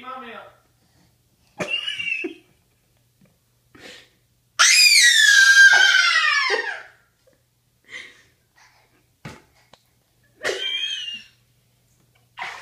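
A toddler's voice: short babbles, then a long, loud, high-pitched squeal of delight that runs for about two seconds in the middle and falls in pitch at the end, followed by a few more brief vocal sounds.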